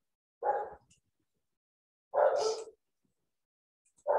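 A dog barking twice, about a second and a half apart.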